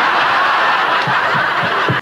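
Sitcom studio audience laughing together in one dense, steady crowd laugh that cuts off suddenly at the end.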